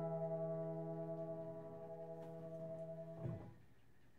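Closing chord of soft keyboard background music, held and slowly fading, then cut off a little after three seconds in, leaving faint hiss.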